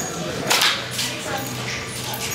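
A short, sharp swish of fabric about half a second in as a football jersey is yanked down over the head and torso.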